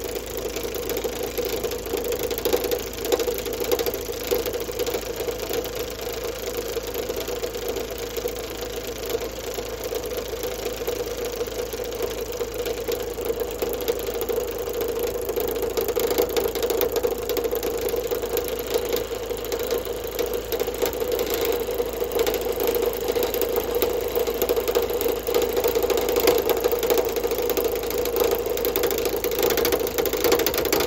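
Wood lathe running with a steady hum while the Sorby RS-3000 ornamental turning device's cutting head works in and out against the spinning wood, making a fast, rattling chatter. It gets a little louder about halfway through.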